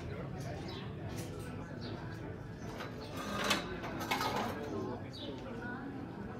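Outdoor street ambience of indistinct chatter from passersby, with a brief louder noise about halfway through.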